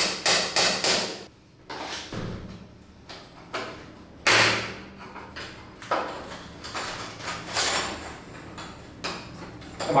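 Quick metal-on-metal blows, about three a second, struck on the rusted outer cover of a round door-knob lock to knock it loose, stopping about a second in. Scattered knocks and a few longer scraping noises follow as the rusted cover is worked off.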